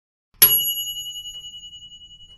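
A single bright bell ding, the notification-bell sound effect, struck once about half a second in. It rings out in a high, wavering tone that fades over about two seconds.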